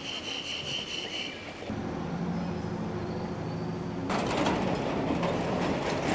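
Street traffic: a high squeal in the first second or so, then a vehicle engine running with a steady low hum. About four seconds in, a louder rushing noise comes in, as of a vehicle passing close by.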